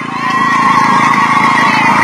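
A steady, loud, high-pitched tone with a weaker tone an octave above it, rising in just after the start and held over a low hum.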